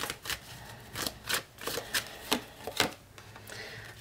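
Tarot cards being handled: drawn off the deck and laid down on a cloth, a series of light, irregular card clicks and slides.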